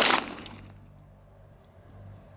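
A single 9mm pistol shot from a Walther PDP right at the start, its report echoing away over about half a second.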